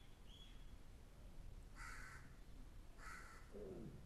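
Faint, near-silent outdoor quiet broken by two short harsh bird calls about a second apart, followed by a brief falling sound near the end.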